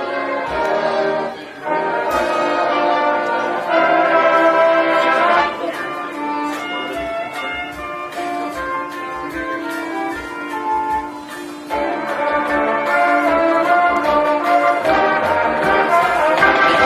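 Marching band playing live: brass-heavy held chords over short low drum strokes, thinning briefly before swelling again about twelve seconds in.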